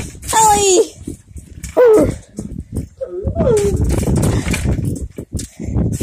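Three short, high-pitched wordless cries with gliding pitch, over close-up rustling and knocking.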